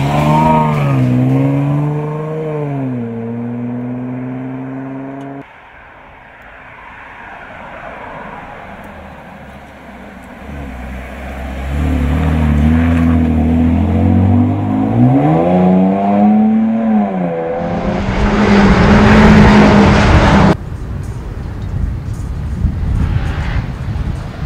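Jaguar F-Pace SUV driving by, its engine note dropping and climbing as it accelerates, then a loud rush of tyre and wind noise as it passes close. The sound breaks off suddenly twice.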